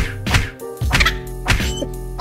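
Background music with about four sharp slaps, unevenly spaced across two seconds: a hand slapping vinyl decals onto a bike frame.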